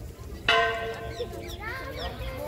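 A Hindu temple bell struck once about half a second in, ringing with several steady tones that slowly fade. Voices talk over the tail of the ring.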